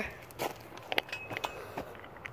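Footsteps on playground wood-chip mulch: a few irregular, soft steps.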